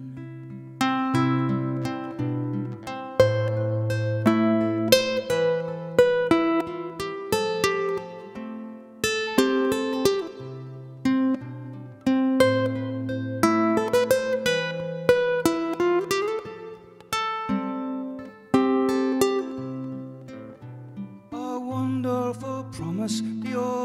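Acoustic guitar playing an instrumental passage of a slow folk song: plucked melody notes, each ringing on, over changing bass notes.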